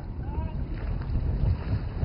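Small boat under way: a low, uneven rumble of engine, water and wind buffeting the microphone.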